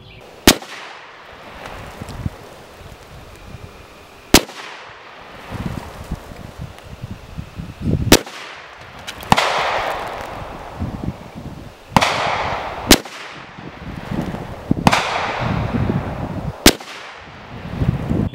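Czech Vz.52 semi-automatic rifle firing single shots of surplus 7.62x45mm ammunition, a few seconds apart, each sharp report followed by a short echo.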